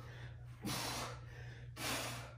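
A man breathing hard from exertion while doing crunches: a long heavy breath starting a little over half a second in, and another near the end.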